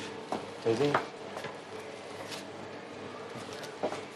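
Low room background with a short voiced utterance from a person about a second in, plus a couple of brief clicks.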